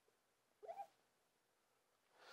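Near silence, broken once a little before the middle by a faint, short, rising squeak of a marker drawing on the glass lightboard.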